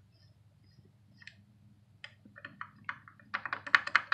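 Kubota G4200 water pump pulley rocked back and forth by hand, its loose shaft clicking and clacking: a few clicks about halfway, then a quick run of rapid clacks near the end. The sloppy play is a sign of a worn water pump, which the owner suspects is a bad bearing.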